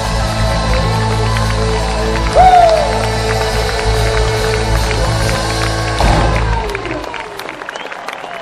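Live rock band with guitars, keyboards and drums holding out the song's final chord, with a loud sung cry that slides up and down about two and a half seconds in. A last hit about six seconds in rings out and dies away, leaving crowd cheering and whistling.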